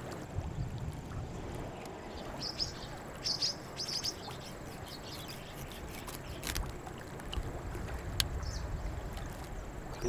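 Outdoor riverside ambience with a low, steady wind rumble on the microphone. A few short bird chirps come between about two and four seconds in, and two sharp clicks come later.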